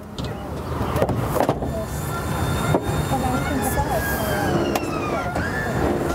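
The BraunAbility MXV's power conversion runs through its closing cycle, a steady mechanical running sound with a faint, slowly falling whine. Faint voices are heard behind it.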